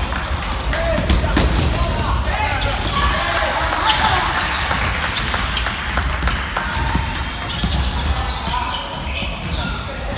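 Basketballs bouncing on a wooden gym floor during a game, repeated sharp knocks, with the players' voices calling across a large hall.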